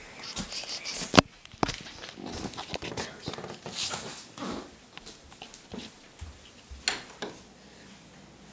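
Handling noise from a handheld camera being carried through a room: rustling and scattered clicks, with one sharp click about a second in.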